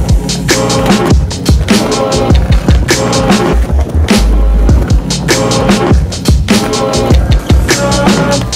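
Skateboard wheels rolling on a concrete skatepark bowl, heard together with an instrumental beat track with a steady rhythm.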